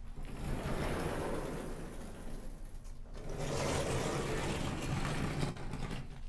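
Sliding blackboard panels rumbling along their tracks as they are pushed up and down, in two long strokes: one over the first three seconds and a second from just after the middle until shortly before the end.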